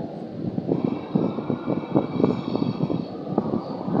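An engine running, heard as a rapid, uneven pulsing that grows louder about half a second in, with a faint high whine in the middle.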